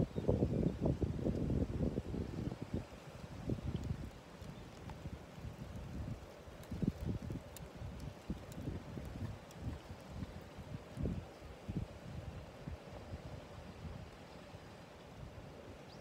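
Wind buffeting the microphone in irregular low gusts, strongest in the first couple of seconds and then coming in weaker puffs.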